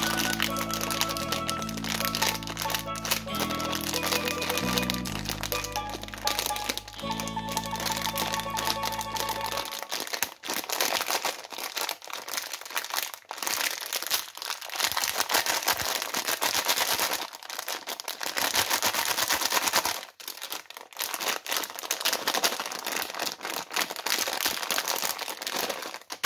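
Thin plastic candy bag crinkling and crackling as it is squeezed and crumpled in the hands. Background music plays under it for about the first ten seconds, then stops and only the crinkling is left.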